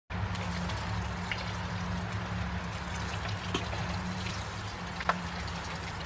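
Steady hiss of light rain with a low hum underneath, and a few faint crunches as boots tread down the limestone fill around a post.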